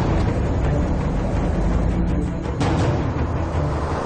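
Tense, dramatic background score with a heavy, steady low rumble.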